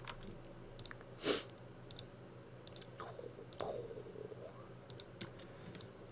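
Scattered computer mouse clicks as faces are selected, with a short louder breathy noise about a second in and soft mouth noises from the narrator near the middle.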